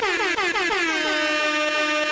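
DJ air-horn sound effect: one sustained horn blast whose pitch drops sharply over and over, several times a second.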